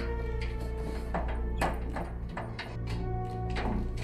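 Dark film-score music: a sustained low drone under held tones, with a few short hits along the way.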